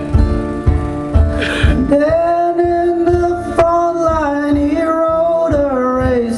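Live acoustic guitar strummed in a steady rhythm, then from about two seconds in a man sings one long held note over the ringing guitar, the note stepping down near the end.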